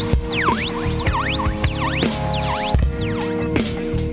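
A Teenage Engineering PO-33 K.O! sampler playing back a sampled chop as a loop. Held pitched tones are cut by repeated swooping pitch dips that drop and rise straight back, several times in four seconds, with a few drum hits among them.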